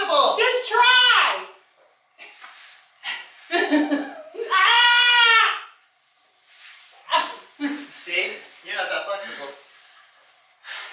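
Wordless human vocal sounds: short cries with gaps between, and one long cry about four to five seconds in that rises and then falls in pitch.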